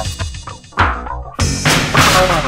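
Afro/cosmic electronic dance music with a drum beat, from a record played at 33 rpm. The mix thins out briefly midway before the full band comes back in.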